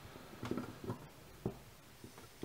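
Soft, short knocks and taps of hands handling a fly at a fly-tying vise, about three in two seconds, as synthetic fibre is folded back over the hook.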